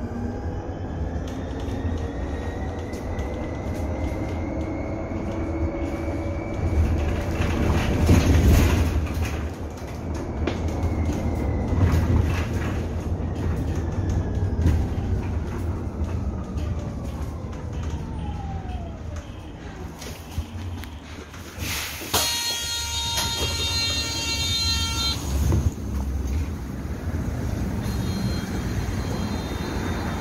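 Electric city bus's drive motor whining over road rumble inside the cabin, the whine rising in pitch as the bus speeds up, then falling as it slows to a stop. An electronic warning tone sounds for about three seconds near the stop.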